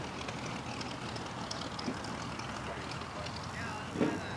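A biplane's engine running steadily as the plane rolls away on its takeoff run, heard through a steady rush of wind on the microphone.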